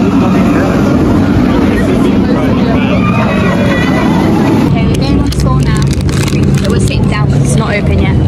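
Wing roller coaster train running along its steel track overhead, a loud steady rumble with people's voices mixed in. The sound changes abruptly a little past halfway.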